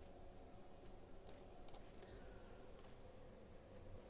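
Near silence: room tone with a few faint computer mouse clicks, spaced irregularly through the middle.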